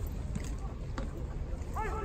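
Ballpark crowd ambience in a domed stadium: a steady low hum with a couple of sharp claps, and a voice calling out near the end.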